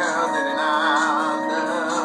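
Electronic keyboard playing a lead line with wavering, vibrato-like pitch over sustained chords, with a steady beat ticking about twice a second.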